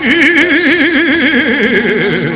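Javanese gamelan music: one long held melodic note with a wide, even vibrato that sinks a little lower near the end, with a few light sharp taps over it.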